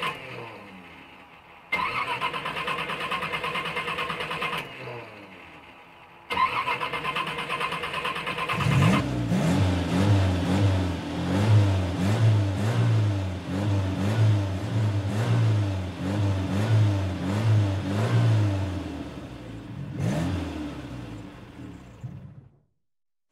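A car engine being started: the starter cranks twice, and the engine catches on the second try. It is then revved again and again before dying away near the end.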